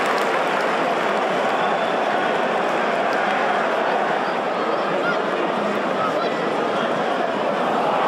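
Football stadium crowd noise: the steady hubbub of many voices in the stands.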